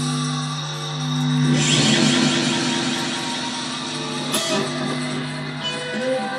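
Electric guitar being played. A held chord rings, then a loud strummed chord comes about a second and a half in and rings on. Sharper picked attacks follow near four and a half seconds and just before the end.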